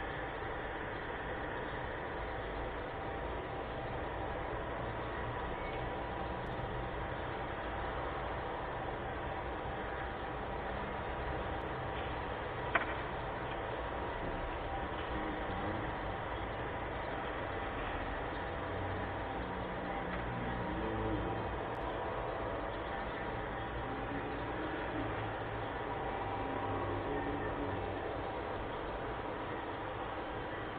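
Steady background noise with one sharp click about 13 seconds in.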